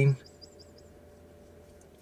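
A small bird chirping faintly, a quick run of about six high chirps in the first second, then quiet.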